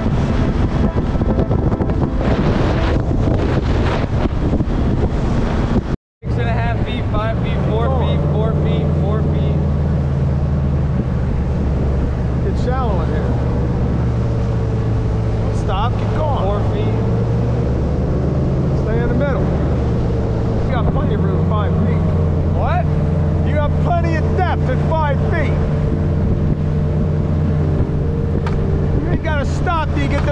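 Bass boat's outboard motor running, with wind rushing over the microphone for the first few seconds. After a sudden cut about six seconds in, the motor settles into a steady low drone at slow speed.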